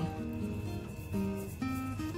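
Background instrumental music: a slow melody of held notes, each changing about every half second.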